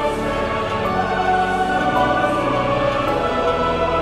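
Choir and congregation singing a hymn with orchestral accompaniment, long notes held and moving slowly.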